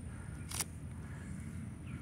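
Quiet outdoor background with a faint steady high tone, and one short click or hiss about half a second in.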